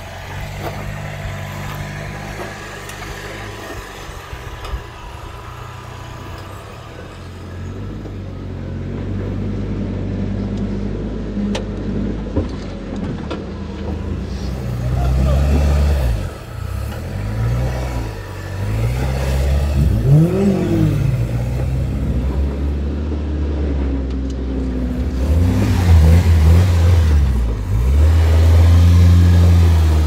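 A rock-crawling 4x4's engine working over boulders: a low, steady run at first, then repeated throttle blips from about halfway, the pitch rising and falling, getting louder toward the end.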